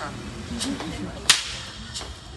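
A single sharp, loud crack about a second and a quarter in, with a fainter crack a little earlier.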